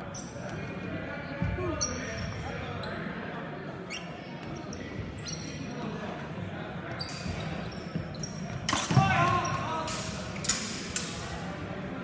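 Steel longsword training blades clashing in a fencing bout: a handful of sharp, ringing impacts, the loudest about nine and ten and a half seconds in. Under them, hall chatter echoing in a large gym.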